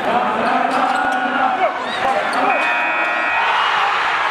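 Basketball game sound effect: arena crowd noise with a ball bouncing and short squeaks on the court, with a held tone for about a second near the middle.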